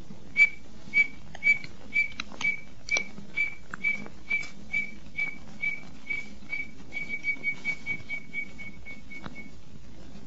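Whistled quail (codorna) call: a long series of short, high whistled notes about two a second, growing quicker and softer in the last few seconds before stopping.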